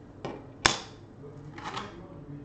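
A makeup compact and brush being handled and put down: a light click, then a sharp plastic clack about two-thirds of a second in, and a brief rustle near the end.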